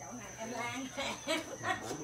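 Quiet background talk from people around a dinner table, heard in short broken phrases.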